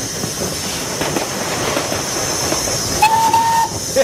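Steam locomotive running with a steady hiss of steam, heard from the cab. About three seconds in there is one short steam-whistle blast, lasting under a second.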